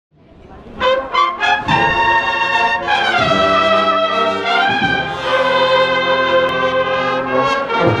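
Brass marching band playing a processional march: the music fades in, opens with a few sharp accented chords, then moves into long, held brass chords.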